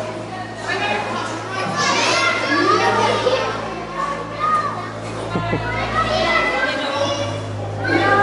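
Young children's voices, high-pitched and excited, calling out and chattering in a large hall, mixed with some adult talk, over a steady low hum.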